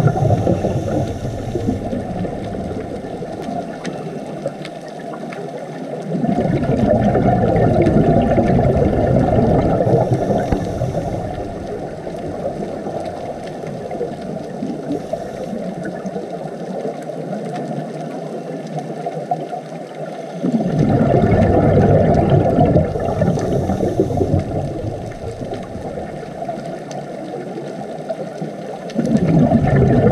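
Muffled underwater rushing from a scuba diver's regulator and exhaled bubbles. It swells into louder surges several seconds long: near the start, about six seconds in, about twenty seconds in, and again near the end.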